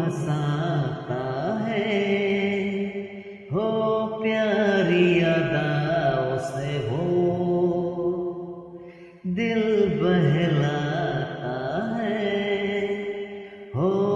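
A man and a young girl singing a Hindi film song over a recorded backing track, in three long phrases with short breaks between them.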